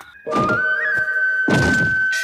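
Two heavy impact sound effects, about half a second in and again about a second and a half in, over a single high held note of dramatic background music.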